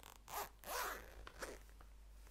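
A zip pulled open in two quick rasping strokes, followed by a few shorter, fainter strokes and small clicks.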